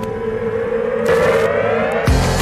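Opening-theme music with a siren-like synthesized swell: one tone rising steadily in pitch and growing louder.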